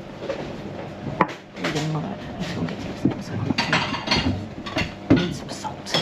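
Clinks and knocks of crockery and cutlery on a café table, mixed with indistinct voices; a sharp knock about five seconds in is the loudest sound.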